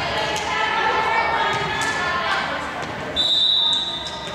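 Players' voices calling out in a gym hall, with a few ball bounces on the hardwood floor, then about three seconds in one short steady referee's whistle blast, the signal to serve.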